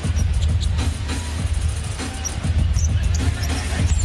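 Arena music with a heavy bass beat playing over the game, with a basketball bouncing on the court.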